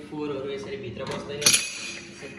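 Metal burner parts of a glass-top gas hob being handled and set down, with one sharp clink about one and a half seconds in that rings briefly.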